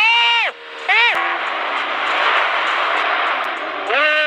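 Sport motorcycle engine revved hard twice in quick succession, each rev sweeping up in pitch, holding briefly and dropping away, followed by a steady rush of wind and road noise at speed.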